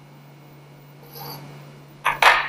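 Compass pencil lead scratching across drawing paper as an arc is drawn, a short faint rasp about a second in, over a steady low hum.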